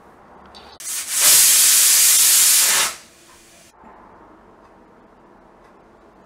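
Stovetop pressure cooker whistling once: steam hisses out loudly past the weight for about two seconds, then dies away. The whistle shows the cooker is at full pressure; it is one of the whistles counted to time the cooking.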